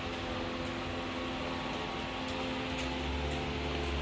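Steady mechanical hum of a running machine, a whir with a constant pitch over a soft hiss, with a low rumble growing in the last second.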